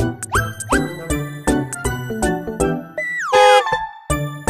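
Playful children's-style background music with a steady beat and bell-like notes. Two quick rising glides come just after the start, and a longer falling glide about three seconds in.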